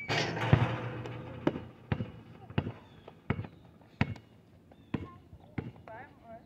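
Basketball bouncing on an outdoor asphalt court: about eight sharp bounces at a steady dribbling pace, roughly two-thirds of a second apart, after a brief rush of noise in the first second.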